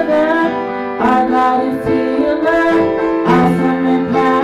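Woman singing a contemporary worship song into a microphone with piano accompaniment, holding long notes.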